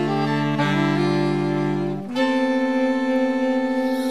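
Music: a slow saxophone ensemble holding sustained chords with no vocal, the chord shifting shortly after the start and again about halfway through.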